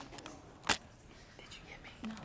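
Hushed whispering voices, with one sharp click about two-thirds of a second in.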